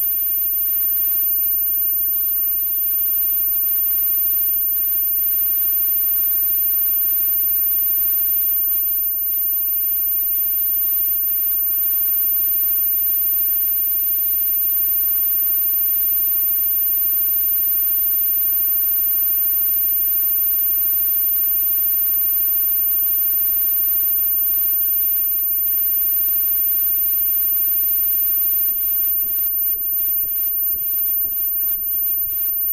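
Steady electrical mains hum and hiss from live stage amplifiers and PA between songs, with a constant high-pitched whine over it.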